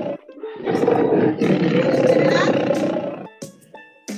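Recorded roar of a large wild animal: the end of one roar, a short break, then another long, rough roar that fades out a little after three seconds. A few short musical tones follow near the end.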